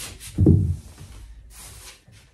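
Rustling of a crocheted acrylic yarn shawl as the wearer moves around, with a loud, short, low thump about half a second in.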